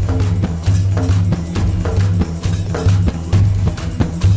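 Background music with a steady percussion beat over a bass line.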